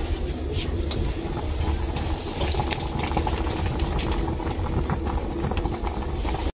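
A pot of sinigang soup boiling hard on a gas stove burner: a steady bubbling with a hiss of steam, and a few faint ticks.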